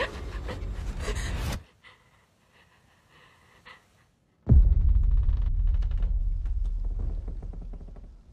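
Horror trailer soundtrack: a loud low hit that cuts off sharply about a second and a half in, a few seconds of near silence with faint scattered sounds, then a sudden deep boom that fades away slowly.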